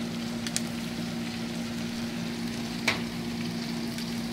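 Frog legs in a foil pan on a gas grill sizzling, a steady hiss with a low steady hum beneath it, and a sharp click about three seconds in.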